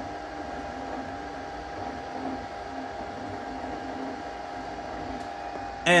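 Anycubic Kobra 2 Max 3D printer laying down its first print. Its fans give a steady whir, and under it the stepper motors hum in lower tones that shift in pitch as the print head moves.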